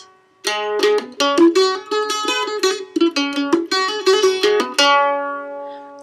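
Mandolin picked in the Amdo Tibetan dunglen style: after a brief pause, a short run of struck notes with quick trill ornaments (fast hammered note repeats), ending on one long ringing note.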